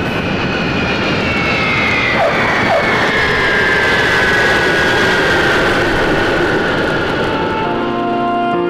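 Jet airliner sound effect: a loud, steady engine roar with a high whine that falls slowly in pitch as the plane passes.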